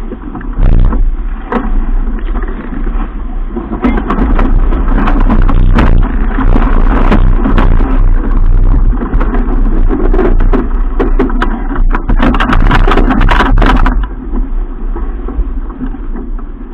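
Strong wind buffeting the microphone and water rushing and splashing past the hull of a sailing keelboat heeled in a blow, with frequent sharp knocks and hits throughout.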